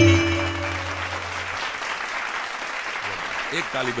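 Audience applauding steadily as a song ends, its last tabla stroke and held notes dying away over the first second and a half. A man's voice starts up over the clapping near the end.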